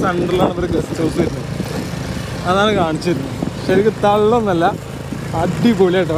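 Motorcycle engine running steadily while riding, under a voice heard in phrases that waver up and down in pitch.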